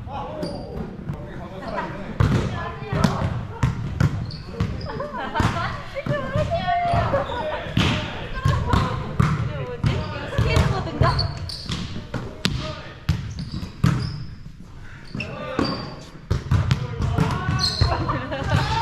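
Volleyballs being struck and bouncing on a gymnasium's wooden floor: repeated, irregular sharp impacts in a large echoing hall, mixed with people talking.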